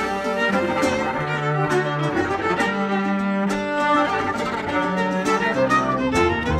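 Instrumental folk music led by bowed strings: fiddle over a cello line, sustained notes with a steady pulse and no voice.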